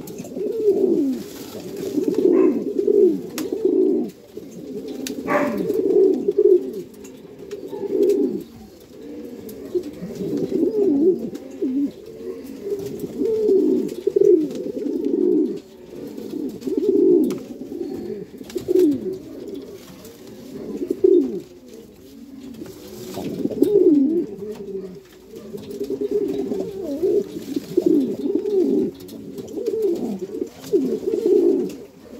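Male rafeño domestic pigeon cooing repeatedly in breeding display: deep rolling coos, one after another every second or two.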